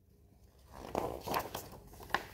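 Paper rustling and a few soft taps as a hardcover picture book's page is turned and the book handled, starting a little past halfway through the first second.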